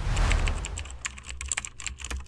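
Sound effect of keyboard typing under a TV channel's logo animation: a whoosh-like swell over a low rumble, then a quick run of sharp key clicks as on-screen text types itself out.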